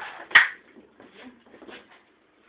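A sharp clink about a third of a second in, then softer clattering and rustling as dishes and food are handled on a kitchen counter.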